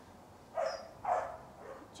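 A dog makes a few short, breathy sounds: two about half a second and a second in, and a fainter one shortly after.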